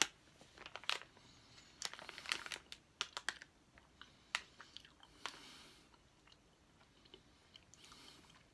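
A person chewing a Jelly Belly jelly bean close to the microphone: irregular soft clicks and crunches, busy for about five seconds and then thinning out.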